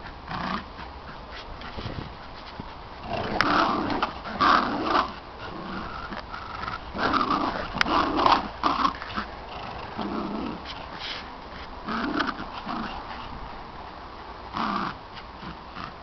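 Dogs play-growling over a rope toy in a tug-of-war game. The growls come in irregular bursts with short pauses between, loudest in the first half.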